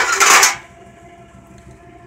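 Thin metal interior trim panels clattering and scraping against each other as one is moved aside, a brief burst in the first half second.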